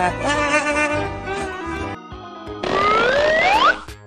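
A short burst of cartoon-style music with wobbling, bending pitches, then a rising whoosh sound effect about two and a half seconds in, sweeping upward for about a second.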